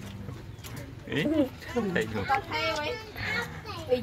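People talking: several short spoken phrases from about a second in.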